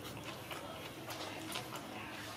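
A person chewing a mouthful of noodles close to the microphone, with soft wet mouth clicks several times over two seconds.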